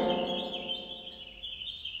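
Birdsong chirping steadily in the background, a continuous high twittering. The end of a spoken counting word fades out in the first half second.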